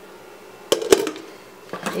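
A few sharp knocks and clinks of cookware on a stovetop: two close together under a second in, then another just before the end.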